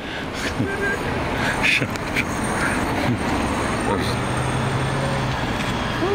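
Dodge Challenger driving past close by: engine and tyre noise that swells at the start and holds steady, with a brief low engine hum in the second half.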